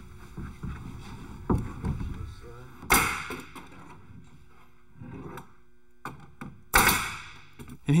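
Bostitch pneumatic coil nailer firing twice into an OSB subfloor sheet, about four seconds apart, each shot a sharp bang that trails off briefly. Before the first shot, a few lighter knocks come from the sheet being handled into place.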